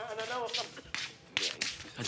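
Television audio jumping as channels are flipped with a remote: a wavering musical note breaks off about half a second in. A few short, sharp noise bursts follow.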